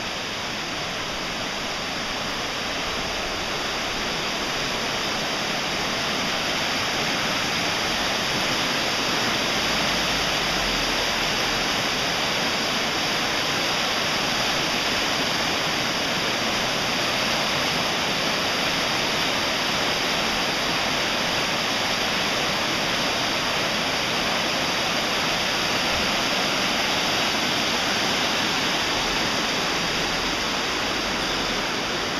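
Muddy floodwater rushing fast through a street as a flash-flood torrent: a steady, loud rush of water that grows a little louder over the first few seconds.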